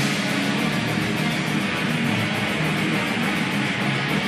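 Live heavy metal band playing: loud distorted electric guitars over drums, with fast, even cymbal strokes.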